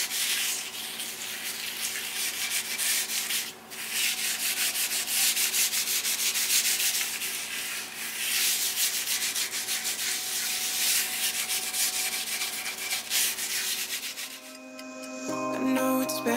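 Cloth rubbing oil into a tamo (Japanese ash) cutting board with fast back-and-forth strokes, making a scrubbing sound that stops briefly about three and a half seconds in. The rubbing ends shortly before the end, and music comes in.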